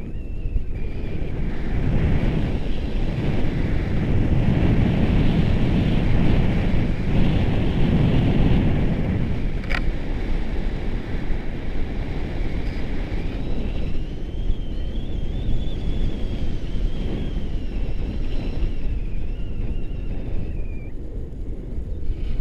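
Wind buffeting the microphone of a camera carried through the air on a tandem paraglider flight: a steady low rumble that swells for several seconds in the first half. A faint thin whistle wavers in pitch throughout, and there is one short click near the middle.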